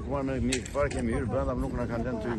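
Speech: a woman talking in Albanian.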